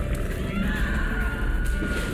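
Dramatic background music with a heavy low rumble and a long high held note that enters about half a second in.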